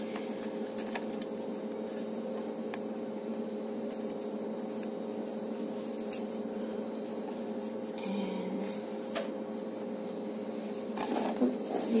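A steady low hum runs throughout, with faint squishing and a few small clicks as a lime is squeezed by hand over a plastic container of avocado.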